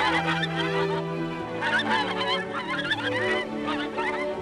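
Farmyard poultry calling in two bouts over steady background music.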